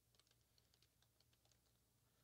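Faint computer keyboard typing: a quick run of light key clicks that stops about one and a half seconds in.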